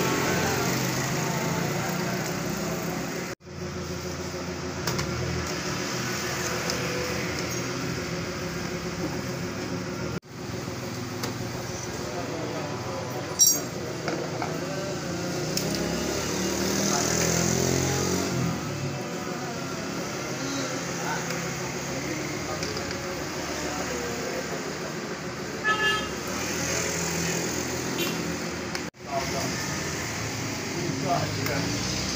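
Indistinct background voices mixed with passing street traffic, with a sharp click about 13 seconds in and smaller clicks near 26 seconds. The sound cuts out briefly three times.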